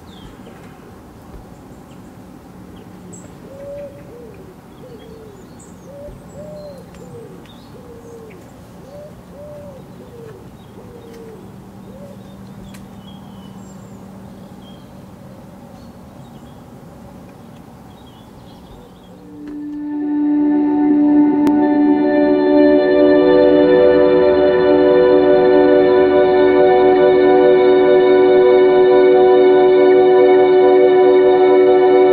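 Outdoor birdsong through an open window: a bird cooing in a low voice, over and over, with faint chirps of small birds. About two-thirds of the way through, guitar music comes in and is much louder.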